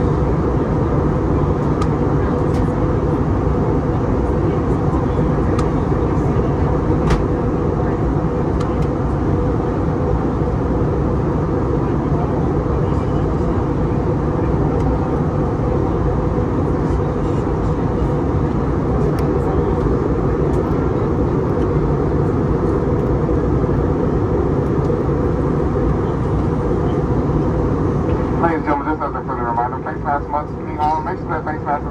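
Steady cabin noise of an Airbus A320neo in flight, engine and airflow noise heard from a window seat, with a few faint clicks. Near the end the noise drops and a voice begins.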